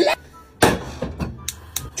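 A person's voice: a short breathy exclamation without words about half a second in, with a couple of faint clicks near the end.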